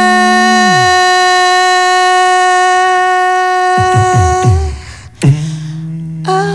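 Two voices hold long, steady hummed or sung notes with a horn-like tone; the lower one slides down and stops about a second in. The higher note carries on until about four and a half seconds in, low sliding vocal sounds follow, and after a sharp click a new lower held note starts near the end.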